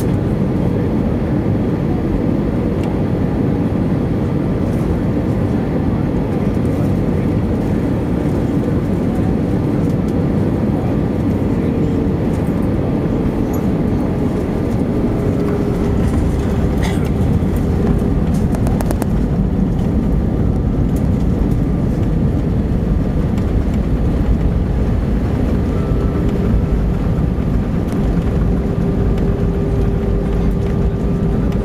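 Airbus A320 cabin noise on landing: steady engine and airflow noise with a faint whine. About halfway through the main wheels touch down and a deeper tyre rumble from the runway sets in, with a few short rattles a couple of seconds later.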